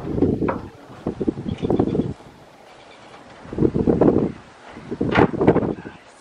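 Wind buffeting the microphone in several loud gusts, with quieter stretches between.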